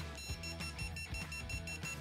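Non-contact voltage detector beeping rapidly, a high-pitched pulsing tone that signals the alternating field of a live cable, with music playing faintly underneath.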